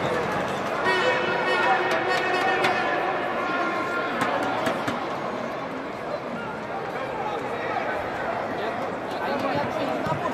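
Football stadium crowd: chatter and voices from the stands, with a loud drawn-out call from the crowd in the first few seconds.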